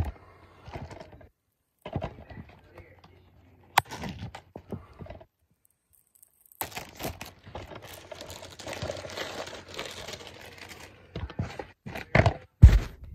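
Plastic shrink-wrap being torn and peeled off a DVD case, crinkling in irregular stretches broken by two short silent gaps, with one sharp click about four seconds in.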